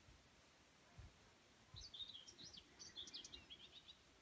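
A small songbird singing faintly: a quick twittering run of high chirps starting a little under two seconds in and lasting about two seconds, with a few soft low thumps underneath.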